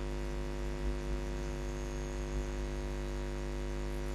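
Steady electrical hum with a faint hiss underneath, unchanging, picked up by the narration's recording chain.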